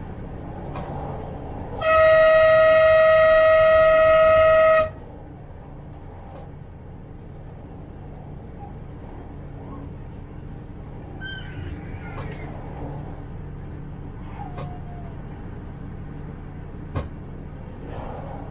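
A train horn gives one long, steady blast of about three seconds, a warning sounded on the approach to a level crossing. The train's steady running rumble from the cab carries on underneath, with a single click near the end.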